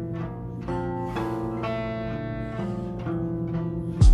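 Background instrumental music: a melody over a steady low bass, with a new note about every half second.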